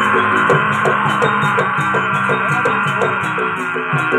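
Javanese jaranan (kuda lumping) accompaniment music played loud: gamelan strokes keep an even beat of about three a second under a fast, high cymbal-like shimmer. A dense, shrill sustained tone sounds over them and fades near the end.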